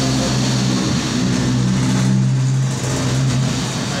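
Electric hair clipper running with a steady low buzz while cutting hair at the side of the head.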